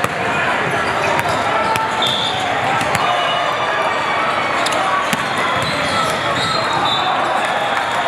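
Big-hall ambience of many volleyball courts in play: a steady babble of many voices with frequent sharp smacks and bounces of volleyballs from around the hall, and a few short high squeaks.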